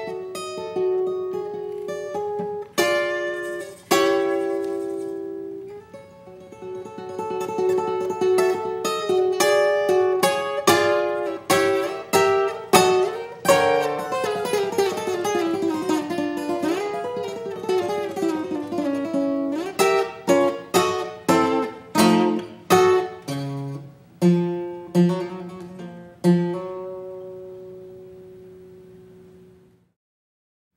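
Solo acoustic guitar playing a contemporary piece in plucked notes and chords, with a descending run in the middle. Near the end a last note is left to ring and fade away.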